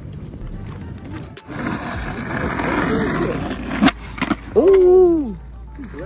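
Skateboard wheels rolling on asphalt, a rough steady noise for about two seconds, ending in a sharp clack of the board a little before the middle. Then a person lets out a long shout.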